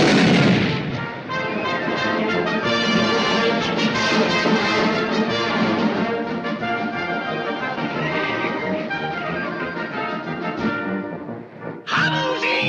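A loud bang at the very start, then an orchestral cartoon score with brass carrying the tune.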